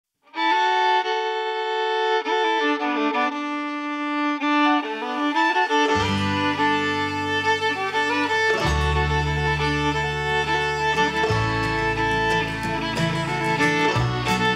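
Instrumental song intro: a fiddle plays a melody on its own, then low bass notes and other instruments join in about six seconds in, filling out the sound.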